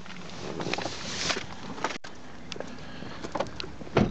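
Someone climbing out of a car: rustling movement with a few light clicks and a sharp knock at the end, typical of a car door being worked, over the steady sound of the Honda Accord's petrol engine idling.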